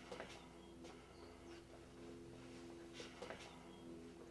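Near silence: a faint steady low hum with a few soft ticks.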